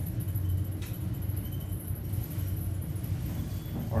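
Hydraulic elevator car travelling down, heard from inside the cab as a steady low hum, with one faint tick about a second in.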